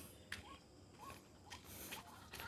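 Faint outdoor ambience: a small bird giving short rising chirps about twice a second, with a few light clicks.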